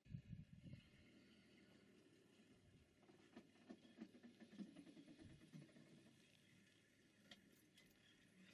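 Near silence: a faint low rumble with a few soft scattered clicks.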